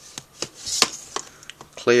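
Plastic Blu-ray cases clicking and rubbing against each other as one is pulled out of a tightly packed shelf: a series of light sharp clicks, with a brief sliding hiss near the middle.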